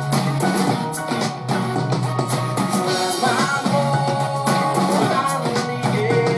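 Playback of an unfinished, unmixed song from a music production session: a steady drum beat under sustained melodic instrument parts, with little deep bass.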